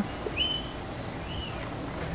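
Outdoor ambience with a bird chirping: three short calls that rise and fall, about a second apart.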